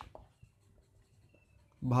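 Marker tip writing on a whiteboard, faint, with thin squeaks of the tip on the board.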